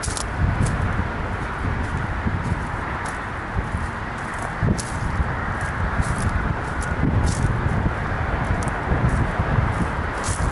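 Wind buffeting the microphone in an irregular low rumble, with a few faint clicks and rustles scattered through.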